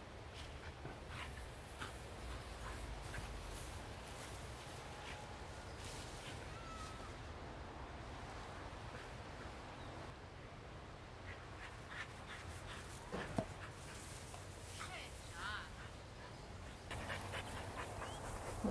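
Faint outdoor ambience: a steady low rumble with scattered light clicks and rustles, a few short animal calls, and one sharper click about 13 seconds in.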